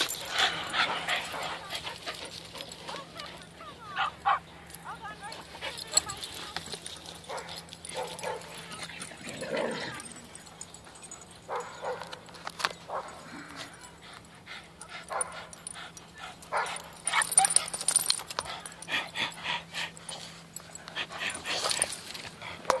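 Several dogs playing together, with short barks and yips scattered through.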